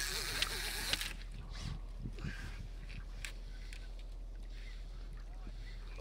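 A brief burst of splashing water in about the first second, from a hooked sturgeon near the surface beside the boat. After it, a low, steady background of water around the boat with a few faint clicks.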